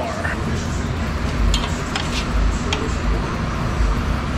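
A few light metallic clinks of steel tools against an engine-block stud, over a steady low shop background noise.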